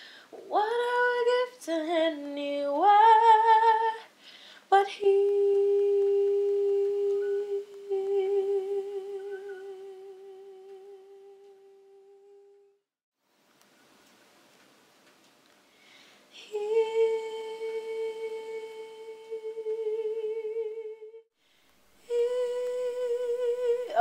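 A woman humming a wordless melody into a studio microphone. A few short notes step up and down, then she holds one long note with vibrato that slowly fades away. After a pause she holds two more long notes.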